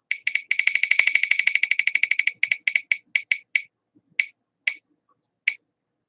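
Online spinning-wheel name picker's ticking sound effect from a phone speaker: a fast run of sharp, pitched ticks, about fourteen a second, that slows to single ticks half a second and more apart as the wheel coasts to a stop.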